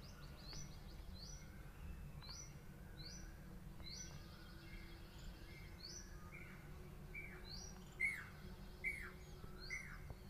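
Birds chirping in the background: short high chirps repeated about once a second, joined in the last few seconds by louder falling calls. A low steady hum sits underneath.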